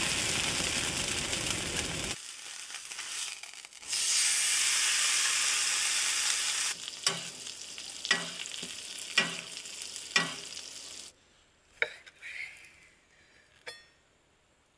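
Steak frying in a cast-iron skillet, with a loud, sizzling hiss that drops back about two seconds in and swells loud again about four seconds in. After that the sizzle is quieter, with light taps about once a second. It cuts off about eleven seconds in, and a few faint clicks follow.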